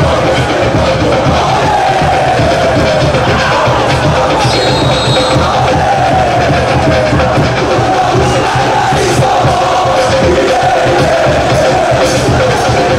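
A large stadium crowd of football supporters singing a chant together in unison, loud and continuous.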